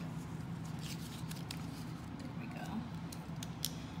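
Paper banknotes being handled on a table: scattered short, soft rustles and crinkles over a steady low hum.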